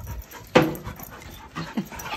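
Goldendoodles play-fighting: one short, sharp dog vocalisation about half a second in, then a brief faint whine-like sound near the end, amid the dogs' scuffling.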